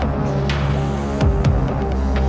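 Progressive techno playing: a deep held bass note that glides down in pitch just past a second in, with two sharp percussion hits about a second apart.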